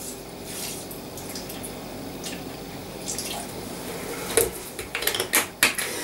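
Orange juice being poured into the metal mixing bowl of a Thermomix TM31, a steady liquid pour lasting a few seconds. After that come several sharp knocks and clinks as the container is set down and things are handled.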